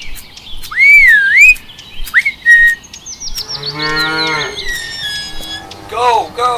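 A loud whistle that swoops up and down, then a shorter whistle, followed about halfway through by a cow's moo lasting about a second.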